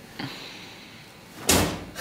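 A single heavy bang about one and a half seconds in, like a door slamming, after a quieter stretch with a faint rustle near the start.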